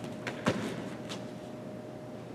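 Three short knocks and thuds of a body and a foam roller shifting on an exercise mat, the loudest about half a second in, over a faint steady hum.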